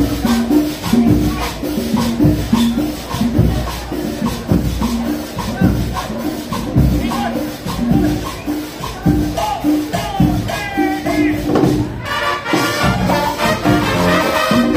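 Street marching band playing an upbeat Latin tune: a steady drum and cymbal beat under a repeating low melody. About twelve seconds in, the music changes to a denser, brighter passage.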